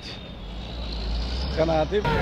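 Low rumble of passing road traffic that grows louder over the first second and a half, with a man's voice starting near the end.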